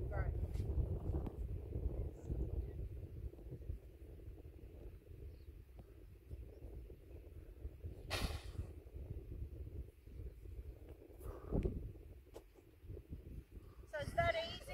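Wind noise on the microphone, with a short loud hiss about eight seconds in and a softer one a few seconds later.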